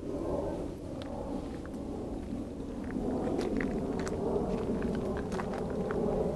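Steady low outdoor rumble with a faint mid-range hum, and faint scattered ticks of footsteps on gravel.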